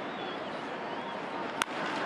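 Steady ballpark crowd noise, then about one and a half seconds in a single sharp crack of a wooden bat meeting a pitched baseball: hard contact for a home run, 105.7 mph off the bat.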